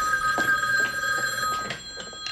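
Corded desk telephone ringing: one long ring of two steady tones that cuts off shortly before the end.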